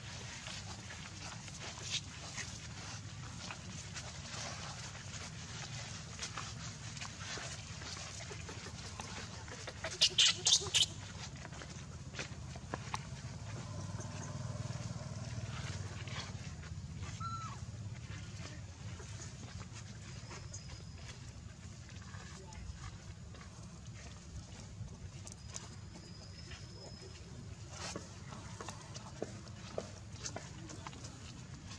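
Macaque calls: four short, high-pitched squeals in quick succession about ten seconds in, over a faint steady low hum and scattered small clicks.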